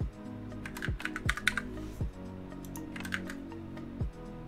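Typing on a computer keyboard in two short bursts of key clicks, the first about a second in and the second about three seconds in.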